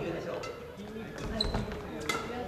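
Badminton rally in a gym hall: rackets strike the shuttlecock with short sharp clicks, and a shoe squeaks briefly on the wooden court floor about one and a half seconds in, with voices in the hall.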